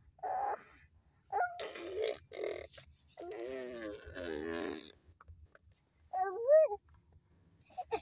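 A young child making wordless crying sounds: a few short breathy bursts, then a long wavering cry in the middle, and a short rising-and-falling cry near the end.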